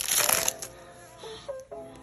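Foil trading-card booster pack crinkling as the stack of cards is slid out of the torn wrapper, loud for about the first half second. After that it is quieter, with faint music in the background.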